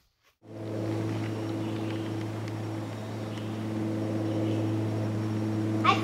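A steady low mechanical hum, deep and even with overtones, starting abruptly about half a second in. A voice starts at the very end.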